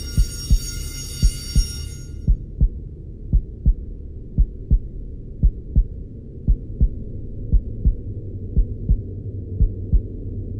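Heartbeat sound effect: paired low thumps, a double beat about once a second, over a low steady drone. A high ringing tone fades out in the first two seconds.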